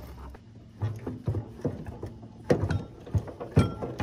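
Metal knocks and clanks of a heavy transfer case being worked onto its mounting pins under a John Deere 400 garden tractor. The sharpest knocks come in the second half.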